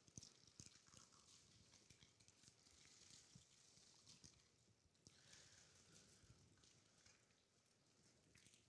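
Near silence with faint crinkling and small ticks of thin plastic as prepackaged communion cups are peeled open.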